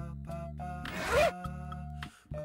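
A jacket zipper pulled once, a short rasp with a rising pitch about a second in, over light background music of short repeating notes.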